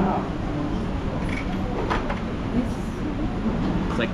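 Eatery ambience: a steady low rumble with background voices, and a few light clicks from utensils and plates around the table.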